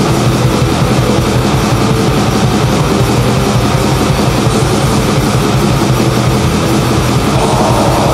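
Atmospheric black metal: a dense, unbroken wall of distorted guitars over fast, evenly spaced drumming.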